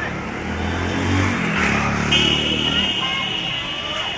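A motor vehicle engine runs close by, its pitch rising as it revs or pulls away, over street chatter. About halfway through, a steady high electronic tone starts and holds.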